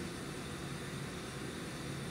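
Steady room tone: a faint low hum under an even hiss.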